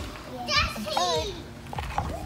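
A small child's high-pitched voice calling out for about a second, with children playing.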